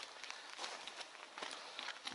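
Footsteps on loose, flat rock fragments and dry scrub on a steep slope, a few uneven steps.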